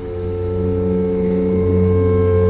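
Theatre orchestra holding a new sustained chord that swells steadily louder, without voices.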